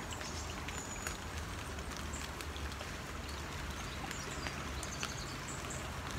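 Light rain pattering: a steady, even hiss scattered with many small drop ticks, over a low rumble.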